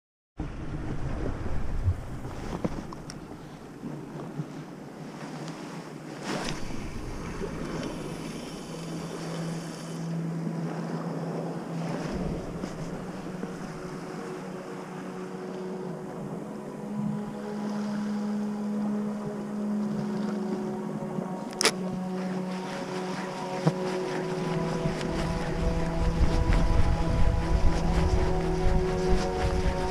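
Sea water washing against the shore with wind buffeting the microphone. A steady low hum joins about nine seconds in and keeps going, and there is one sharp click a little past twenty seconds.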